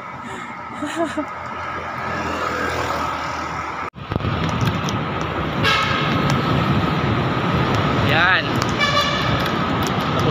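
Road traffic running past, with a steady rushing noise; after a cut about four seconds in, short vehicle horn toots sound twice, near the middle and again towards the end.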